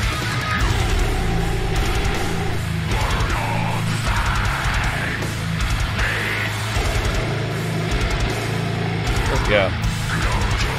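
Metalcore song playing, with heavily distorted electric guitars, fast drumming and screamed vocals.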